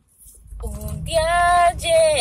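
A woman singing unaccompanied, her voice starting about half a second in and holding one long steady note, then starting another near the end.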